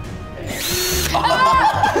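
Cordless drill motor whirring briefly about half a second in, spinning an apple that is impaled on a spade bit.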